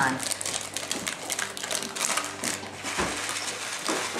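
Plastic bag of alphabet pasta crinkling and rustling as it is handled and opened, in a dense, irregular run of crisp crackles.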